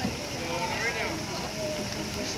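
Indistinct chatter of onlookers' voices over a steady background hiss.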